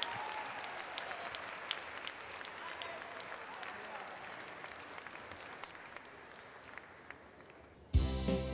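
A crowd applauding, with voices mixed in; the clapping dies away steadily.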